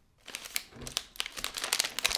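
Plastic multipack wrapper crinkling as hands pick it up and turn it, a run of quick, sharp crackles starting a moment in.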